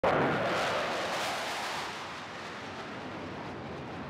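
Formation of military aircraft flying low overhead: a broad rushing engine noise, loudest at the start and slowly fading as the planes pass.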